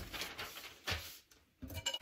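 Newspaper rustling as sheets are spread over a kitchen counter, with a light knock about a second in, typical of a ceramic plant pot being set down, then a few small clicks near the end.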